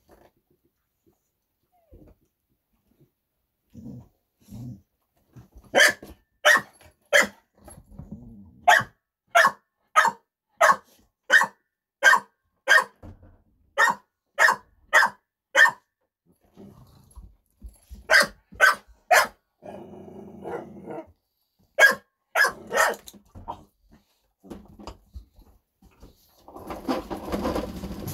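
Pit bull barking in quick, evenly spaced runs, about one and a half barks a second, with low growling before the barks and again in a pause between them, a dog squabbling over a piece of bread.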